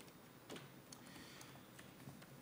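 Near silence: room tone with a few faint clicks, the clearest about half a second in.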